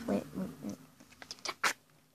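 A girl's short vocal noises right after "wait", then a few small clicks of a phone being handled and one sharp click, after which the sound cuts out.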